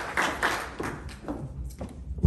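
Scattered clapping thinning out, then a few sharp taps and knocks from a handheld microphone being handled.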